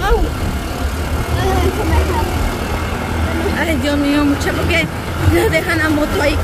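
Motorcycle engine running under way along a dirt track, a steady low rumble mixed with wind rush on the microphone.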